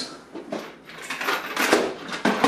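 Tools clinking and knocking against each other and against the hard plastic of a Husky Connect toolbox as they are packed into it: a run of short sharp knocks and clatters.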